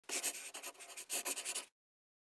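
Logo sound effect: a quick burst of rapid scratchy strokes in two runs, the second starting about a second in, cutting off suddenly.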